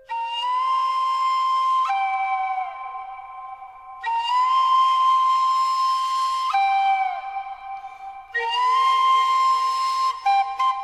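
Solo flute music with a breathy tone, playing a slow repeated phrase. It starts at the beginning, about four seconds in and about eight seconds in. Each phrase is a long held note that steps down to a lower one, which sags off in pitch at its end.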